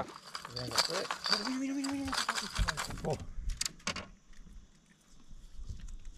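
Fishing tackle being handled: hard lures and hooks clink and click against each other in a tackle tray, with irregular light metallic rattles, most in the first second and again about halfway through. A man's voice briefly hums a held note about two seconds in.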